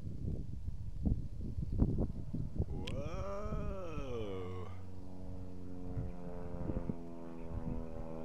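Radio-controlled model airplane's motor: its pitch rises and falls once, about three seconds in, as the plane swings close overhead, then it holds a steady drone.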